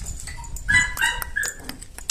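A few short, high-pitched animal calls in quick succession from about the middle, mixed with light clicks or knocks.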